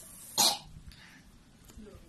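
A young woman coughs once into a tissue, a short sharp cough about half a second in, brought on by the chilli heat of spicy Korean noodles.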